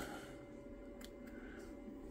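One faint, sharp snip of small scissors trimming frayed fibres off a piece of jute string, about a second in, over quiet room tone with a faint steady hum.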